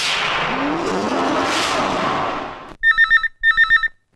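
An electronic desk telephone rings in two short warbling trills of about half a second each. Before it, a loud stretch of dense noise with sliding tones cuts off abruptly about two and a half seconds in.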